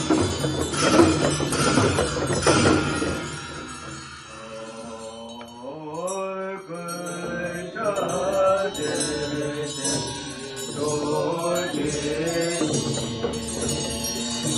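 Hand drums of a Tibetan Buddhist chöd ritual are beaten in a steady, slow beat for the first few seconds. They give way to melodic group chanting of the liturgy, with the voices sliding upward in pitch about six seconds in.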